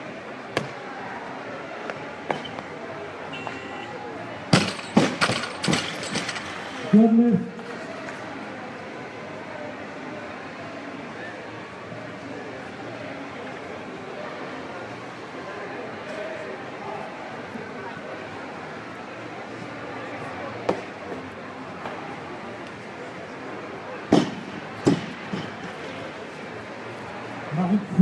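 Loaded barbell with rubber bumper plates dropped onto the lifting platform after a clean and jerk, hitting with a run of sharp bangs as it bounces and settles about five seconds in, followed by a brief shout. Two more single knocks come near the end over the steady murmur of the hall.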